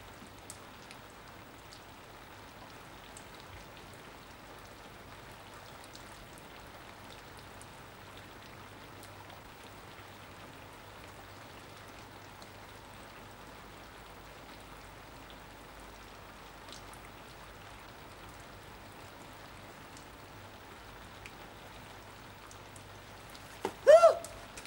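Steady, even patter of pouring rain.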